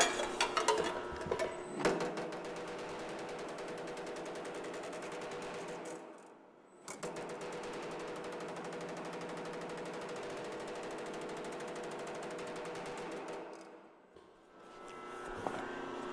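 Power hammer running with rapid, even strikes on a sheet-steel panel, forming a tuck and hammering it closed to shrink and thicken the metal. It starts about two seconds in, after a few loose clicks, stops briefly about six seconds in, then runs again and winds down near the end.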